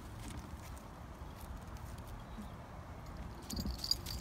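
Footsteps on gravel with a low rumble of the phone being handled as it moves, and a cluster of clicks with a light jingle near the end.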